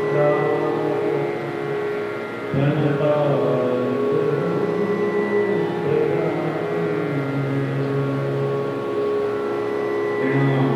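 Slow devotional chanting by a low male voice over a steady instrumental drone, the melody gliding between long held notes.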